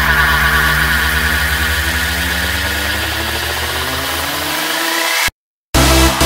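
Electronic dance music build-up: a dense, pulsing, engine-like drone whose pitch slowly rises, the bass falling away, then a short dead silence about five seconds in before the beat of the drop comes in at the very end.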